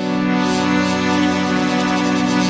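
Melodic techno in a DJ mix: a sustained synthesizer chord that swells up at the start and then holds steady.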